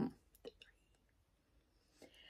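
The end of a woman's spoken word, then near silence with a couple of faint clicks about half a second in.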